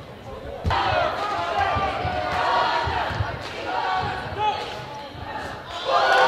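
Several voices shouting and cheering in a gymnasium while a basketball is dribbled on the hardwood court. The shouting starts suddenly about a second in.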